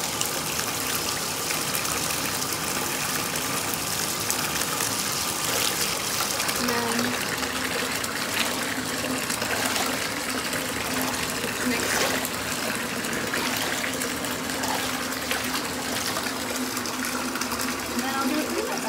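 Bath tap running hard into a filling bathtub, water pouring into bubble-bath foam with a steady rush.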